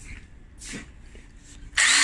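Ridgid cordless impact driver run briefly with no load near the end, its motor whine rising and falling.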